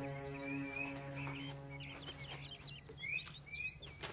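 Small songbirds chirping and twittering in quick, scattered calls, busiest near the end, over soft background music of long held notes that drops away about halfway through.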